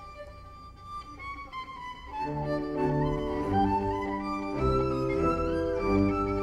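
Solo violin with string orchestra: for about two seconds the violin holds a high line over quiet accompaniment, then the orchestra's strings come in louder with sustained bowed chords while the solo line carries on above.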